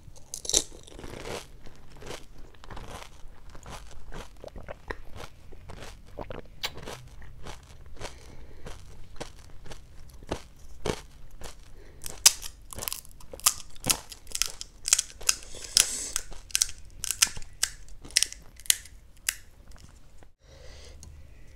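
Close-miked crunching and chewing of a whole pani puri (golgappa), its crisp fried shell filled with spiced water breaking up in the mouth. The crunches come as a steady run of sharp crackles that grow louder and closer together about halfway through.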